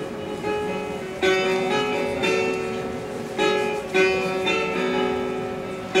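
Persian long-necked lute played solo: a slow melody of single plucked notes, each with a sharp attack that rings on and fades before the next, with short runs of two or three quick notes.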